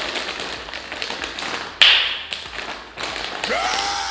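Crinkly plastic crisp bag crackling as it is pulled open, with one loud sharp tearing pop about two seconds in as the seal gives. Near the end a held pitched tone rises, stays level and falls.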